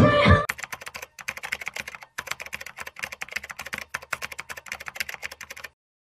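Dance music cuts off about half a second in. Rapid keyboard-typing clicks follow, briefly pausing twice and stopping just before the end, like the typing sound effect laid under an end-card text.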